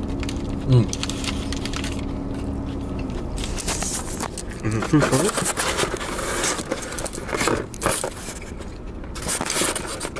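A foil-and-paper burrito wrapper crinkling while a man chews, with two short 'mmm' hums of enjoyment, one near the start and one about halfway. A steady low hum underneath stops about three seconds in.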